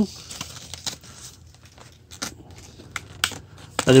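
Small clicks and rustles of a plastic bicycle tail light being handled and fitted back into its plastic packaging case, with a few sharper clicks in the second half.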